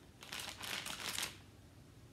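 Clear plastic bag of plastic spoons crinkling and rustling as it is handled, for about a second before it dies away.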